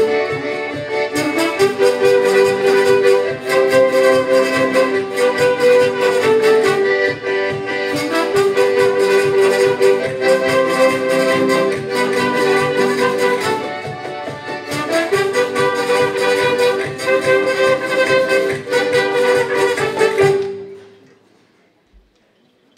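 A live instrumental band of trumpet, alto saxophone, acoustic guitars and cajón plays a tune of held melody notes over a steady beat. The music ends cleanly about twenty seconds in.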